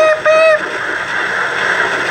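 AM radio broadcast of a sermon heard through a portable CD/radio's small speaker. A voice holds a flat, beep-like "pi" note until about half a second in. A steady loud hiss of broadcast noise follows.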